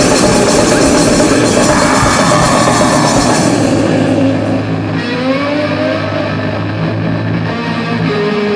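Grindcore band recording: loud distorted guitar, bass and drums with crashing cymbals. About halfway through the cymbals and drums drop out, and the distorted guitar and bass ring on with sustained low notes and sliding higher notes.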